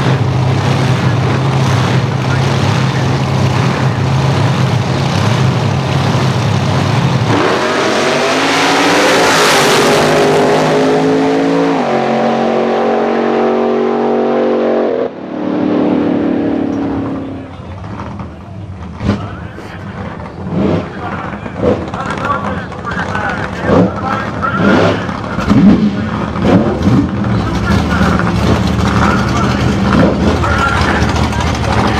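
Two supercharged AA/gas drag cars idle loudly at the starting line, then launch about seven seconds in, their engines rising in pitch in steps through the gears. The sound breaks off abruptly about halfway, followed by a brief falling tone as the cars pull away. After that comes a quieter stretch of voices with scattered knocks.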